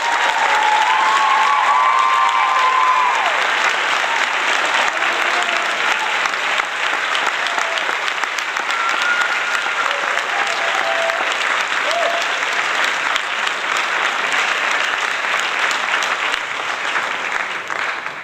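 A crowd applauding with steady, dense clapping. A few voices cheer over it in the first few seconds.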